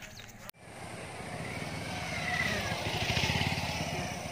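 Motorcycle engine running close by, starting abruptly after a cut about half a second in and growing louder over the next few seconds.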